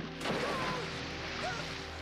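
A sudden splash into the sea just after the start, then churning, rushing water, over the steady chords of the film score.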